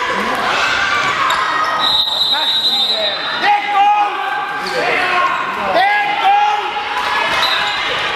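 Youth handball game in a reverberant sports hall: shoes squeaking on the hall floor, the ball bouncing, and young players' voices calling out.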